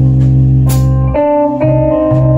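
Live blues-rock band playing an instrumental passage: electric guitar holding notes over bass and drums, with a cymbal hit about two-thirds of a second in.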